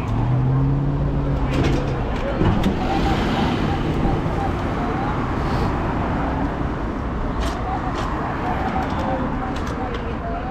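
Street traffic: cars driving past close by, one engine giving a steady low hum through the first two seconds, over the background chatter of a crowd.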